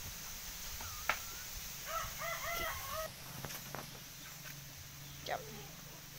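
Chickens calling: a quick run of about five short rising-and-falling calls about two seconds in, with a few single calls before and after.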